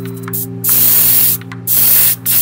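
Airbrush spraying paint in two loud hissing bursts, the first about a second long, the second starting near the end.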